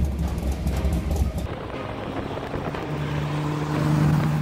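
Engine of a rebuilt fiberglass kit car running, with a steady low hum at first and a higher steady tone from about three seconds in.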